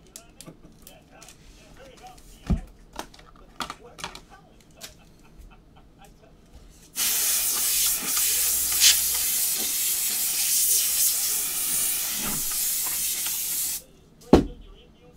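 Aerosol spray can discharging in one continuous hiss that starts suddenly about seven seconds in and cuts off just before the end. Before it, scattered light clicks and taps of handling.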